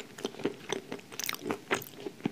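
Close-miked chewing of cream cake with dry nuts: a run of small crisp crunches and clicks, several a second.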